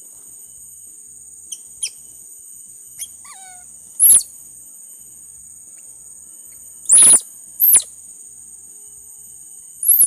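A baby monkey giving short, loud, high-pitched squeals: four calls, the first about four seconds in, two close together past the middle and one near the end, with a few fainter chirps before them. A steady high insect drone runs underneath.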